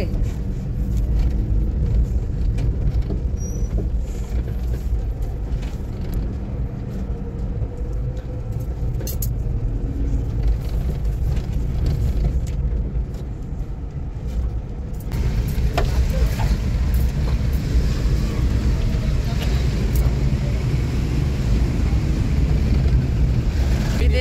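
A Mitsubishi vehicle's engine and tyres, a steady low rumble heard from inside the cab while driving. About fifteen seconds in, a louder hiss of road and traffic noise joins it.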